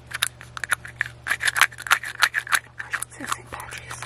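A hollow green plastic two-piece egg handled close to the microphone. Its halves are pressed and snapped together, making a quick run of sharp plastic clicks and taps.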